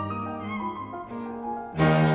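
Piano trio of piano, violin and cello playing a fast, agitated classical-era movement, with held string notes over the piano; the ensemble comes in markedly louder near the end.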